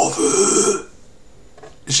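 A man's loud, rough, belch-like vocal noise, made with his mouth wide open, lasting about a second.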